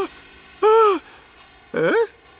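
A man's voice giving two short wordless moans, one rising and falling about half a second in, then a rising one near the end, as the character stirs out of a bad dream.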